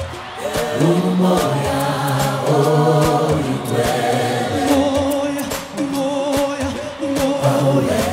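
Live gospel music: a choir singing long held notes, some with vibrato, together with a lead singer and band, with regular beats struck throughout.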